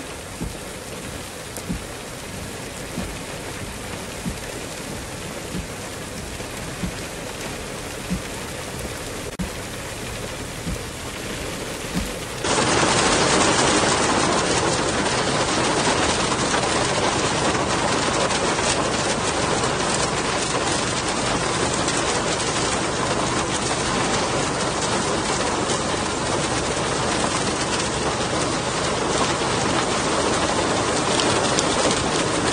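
Heavy rain falling in a steady hiss. For the first twelve seconds it is lighter, with scattered sharp taps. Then it abruptly becomes a much louder, denser downpour.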